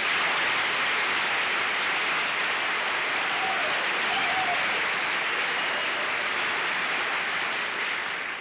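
Studio audience applauding: a steady wash of clapping that tails off near the end.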